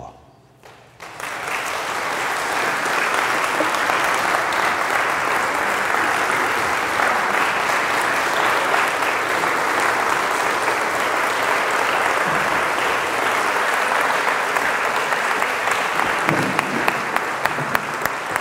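Audience applauding, starting about a second in and continuing steadily and loudly.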